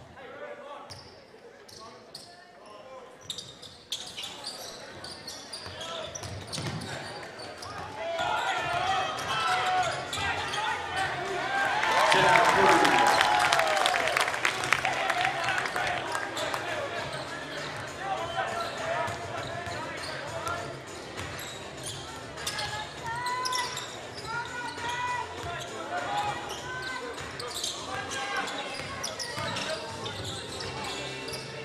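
Basketball game in a gym: a ball bouncing on the hardwood court amid shouting from players and spectators, the voices swelling loudest about twelve seconds in.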